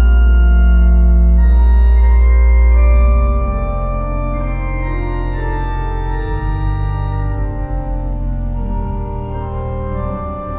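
The 1897 W. W. Kimball pipe organ, rebuilt by Buzard in 2007, playing a hymn in sustained chords. A very deep, loud pedal bass note cuts off about three seconds in, and the chords continue somewhat softer.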